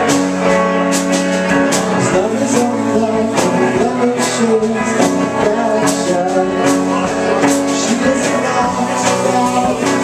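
Live rock band playing: electric guitar chords over a steady drum beat.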